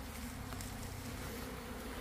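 Honey bees buzzing around their wild colony, a faint steady hum.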